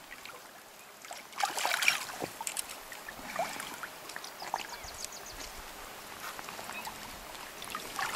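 Splashing in shallow river water as a hooked Arctic grayling is landed by hand, with a cluster of splashes early on and lighter ones after, over the faint steady run of the river.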